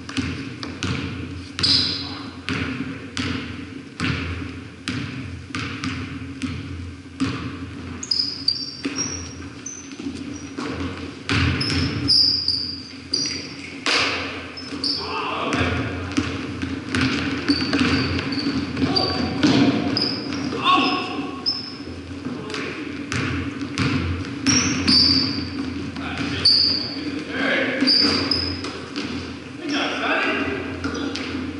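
Basketballs bouncing and dribbling on a hardwood gym floor, with short sneaker squeaks and players' voices calling out, all echoing in a large gym. A steady low hum runs underneath.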